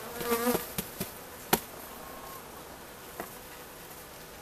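Honeybees buzzing over an open hive. The buzz is louder in the first half second, and a few sharp knocks come through it, the loudest about a second and a half in.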